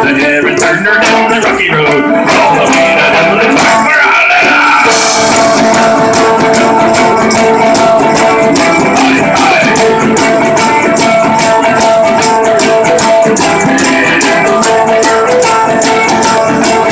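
Live Irish folk band playing a fast tune: fiddle and a strummed mandolin-type instrument over a steady beat of drums and shaken percussion.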